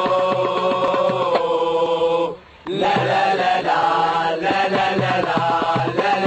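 A football ultras supporters' group chanting in unison over a regular beat. The chant breaks off for a moment about two seconds in, then starts again on a new melody.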